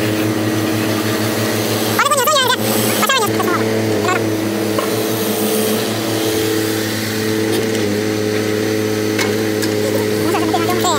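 Mini excavator's diesel engine running at a steady speed, a constant low drone. A short voice with wavering pitch rises over it about two seconds in.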